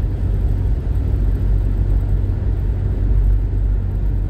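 Steady low rumble of a car driving along a paved highway, heard from inside the cabin: engine and tyre noise at a constant cruising speed.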